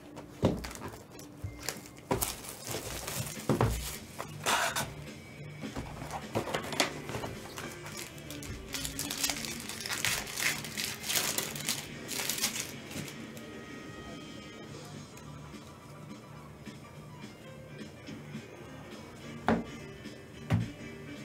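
Cellophane shrink-wrap and packaging crinkling and tearing as a trading-card hobby box is unwrapped and opened, a run of crackles and rips through the first twelve seconds or so. Steady background music plays underneath.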